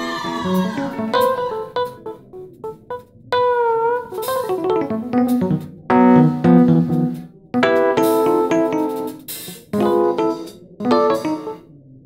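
Solo on a Korg electronic stage keyboard: chords and short runs played in phrases with brief gaps, with one note bent down and back up in pitch about four seconds in.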